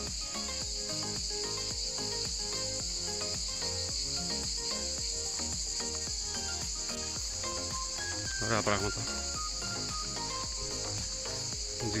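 A chorus of cicadas singing: a steady, high-pitched drone that never lets up. Soft background music plays underneath, and one brief louder sound cuts in about two-thirds of the way through.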